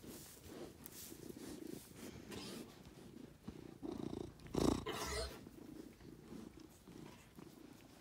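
Domestic cat purring close to the microphone, a steady rough rumble, with one brief louder bump about halfway through.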